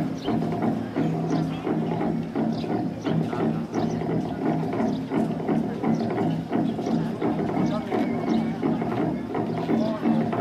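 A group of men's voices singing together in a traditional Naga dance chant: a held, drone-like pitch with a steady rhythmic pulse that goes on without a break.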